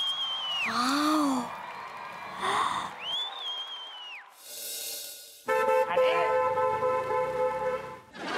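Comic background score of a TV sitcom: two whistle-like glides that rise, hold and fall, then a whoosh, then a held brass-like chord near the end.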